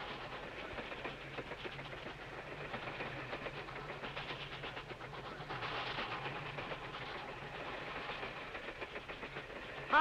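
Passenger train running, heard from inside the coach: a steady rumble with a low hum and a rapid rattle from the carriage.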